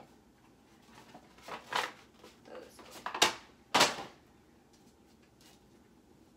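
Objects being handled while a closet is cleared out: rustling, then two sharp bumps about half a second apart, as things are moved and set down.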